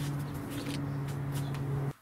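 Paper towel breather layer rustling as it is lifted off a vacuum-bagged epoxy sample, over a steady low hum that cuts off abruptly near the end.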